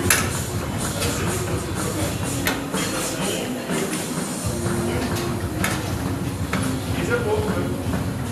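Steady mechanical rumble and whir of a stationary exercise bike being pedaled, with indistinct voices in the background and a few sharp clacks.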